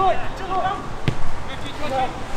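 A football kicked once: a single sharp thud of boot on ball about a second in. Short shouted calls from players come before and after it.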